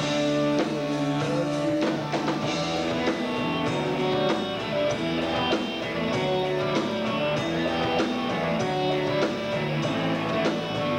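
Live rock band playing an instrumental passage with electric guitars and drums, recorded through a camcorder's built-in microphone.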